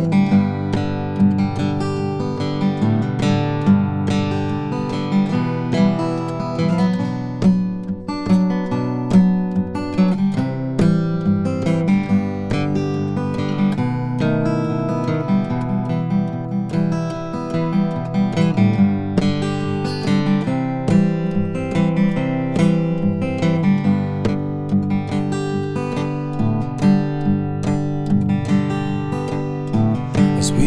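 Cutaway steel-string acoustic guitar played fingerstyle, an instrumental break of picked melody notes over a steady bass line.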